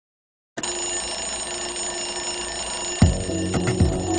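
An alarm clock ringing steadily, starting about half a second in. About three seconds in, music with a low beat comes in over it.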